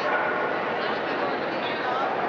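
Dog barking and yipping in short calls, over the steady murmur of a crowded indoor hall.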